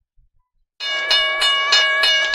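Railroad crossing bell ringing from the cartoon clip playing in the video player, starting abruptly nearly a second in with about three strikes a second. Before it, near silence with a few faint clicks.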